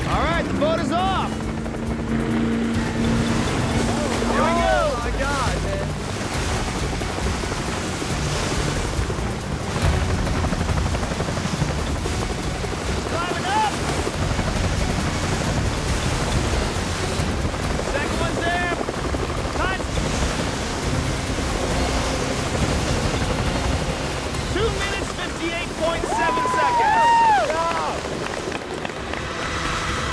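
Speedboat running across a lake, with water and wind noise under background music, broken by short shouts. Near the end, two women whoop and cheer loudly.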